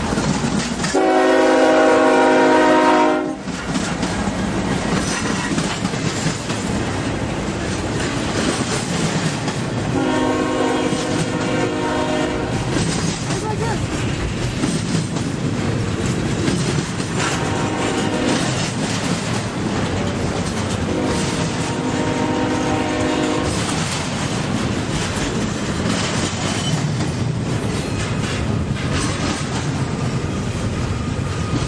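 Horn of a Union Pacific diesel freight locomotive sounding four blasts: a loud one about a second in, then three fainter ones around ten, seventeen and twenty-one seconds. Under them runs the steady rolling clatter of a double-stack container train's wheels passing close by.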